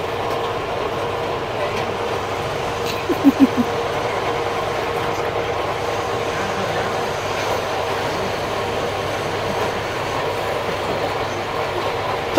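Bench drill press running steadily as the bit is fed into a workpiece under hand pressure: a constant machine hum with a few quick short sounds about three seconds in.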